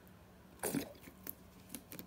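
Squeeze bottle of thick bleach: a brief soft squelch about two-thirds of a second in, then a few light clicks as the bottle is handled.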